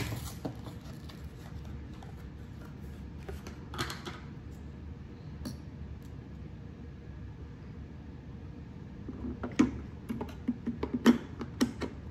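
D-size batteries being handled and fitted into the plastic battery compartment of a toy pottery wheel: scattered light clicks and knocks, with a quick run of sharper clicks in the last few seconds.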